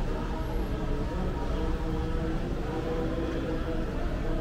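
Outdoor ambience: a steady low rumble with faint held tones of distant music.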